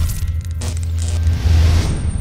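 Logo-sting sound effect: a deep, loud rumble with crackling electric-zap noises. A thin, high, steady tone starts near the end.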